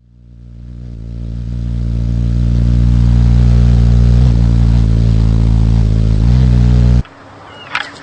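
A deep, steady droning hum with many overtones swells up over the first few seconds and cuts off abruptly about seven seconds in. It is followed by a few sharp clacks and faint chirps.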